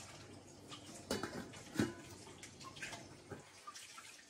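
Coconut-milk fish broth coming to the boil in a wok, bubbling faintly with a few scattered soft pops, the clearest about a second in and again near two seconds.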